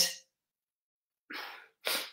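Dead silence, then a short breath from a man about a second and a half in.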